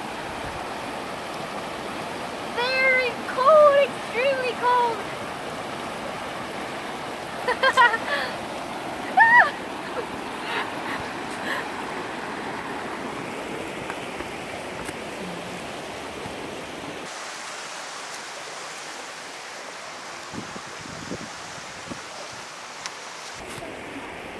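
A shallow river rushing steadily over rocks and small rapids. A woman's voice breaks in with a few short bursts in the first ten seconds. About two-thirds of the way in, the deep part of the rushing drops away and the sound thins.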